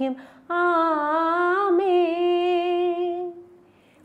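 A woman's voice holding one long sung note for nearly three seconds, wavering slightly in pitch and then fading out.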